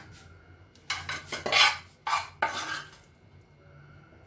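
A metal spatula scraping and clinking against a frying pan and a glass bowl as sautéed vegetables are pushed out, in a few quick strokes about one to three seconds in.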